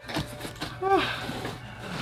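A short vocal sound from a man about a second in, over faint rustling of a cardboard shipping box being handled.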